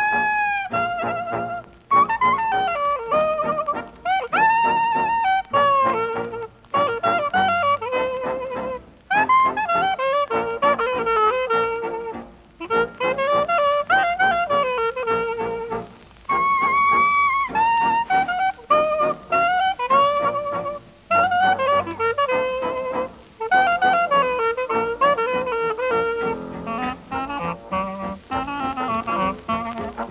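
Historic recording of a small New Orleans-style jazz band playing, with a trumpet lead over clarinet and trombone, in phrases broken by short gaps every two seconds or so.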